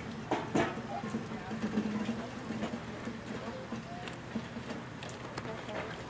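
Indistinct background voices over a steady low hum, with two sharp knocks about half a second in.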